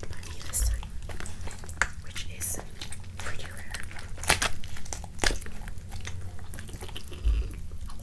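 Rotisserie chicken being torn apart by hand: crispy skin and meat pulled off in sticky, wet crackles and sharp snaps, the loudest snaps about four and five seconds in.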